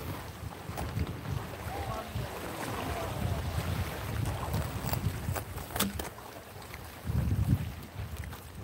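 Wind buffeting the microphone as a low, uneven rumble, with a stronger gust near the end. A few sharp clicks come from the handheld camera being moved.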